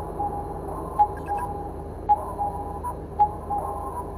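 Electronic intro sound effects: short, high, steady beeps repeating several times a second over a low hum, with a sharp tick about once a second, in the manner of a targeting-screen readout.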